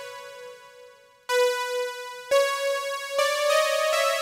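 Single notes from a PG-8X software synthesizer patch: a held note fades away, then from about a second in five notes sound one at a time, each held until the next, stepping slightly higher in pitch, as they are auditioned in a sequencer.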